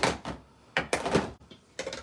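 Craft supplies being picked up and pushed aside on a paper-covered worktable: a few short knocks and sliding rustles as a plastic tape runner and a clear acrylic stamp block are cleared away.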